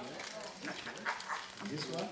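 Indistinct voices of several people talking among themselves off-microphone, with a few small clicks and knocks.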